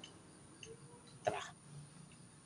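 Mostly quiet background, broken once a little after a second in by a short, abrupt vocal sound from a man: the clipped word "tara".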